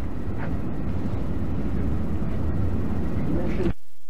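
Steady low rumbling noise on the microphone, which cuts off suddenly near the end.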